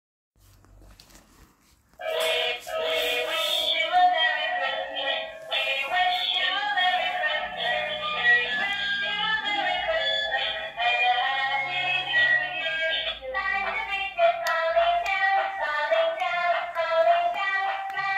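Children's electronic music book playing a song with a sung melody through its small speaker, starting about two seconds in. About thirteen seconds in it changes to a different, more rhythmic tune.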